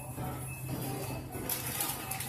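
Faint background music over a steady low hum and general shop noise.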